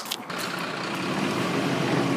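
A steady rushing noise that starts suddenly just after the start, with a low hum joining about halfway through.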